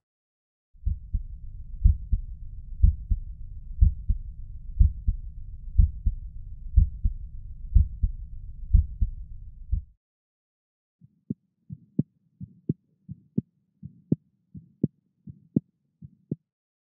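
Stethoscope recording of normal heart sounds, a steady lub-dub about once a second. After a brief pause it switches to the heart sounds of a prosthetic aortic valve: sharp, crisp clicks coming faster.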